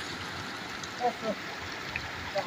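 River water rushing steadily through a concrete weir, with a short burst of voice about a second in.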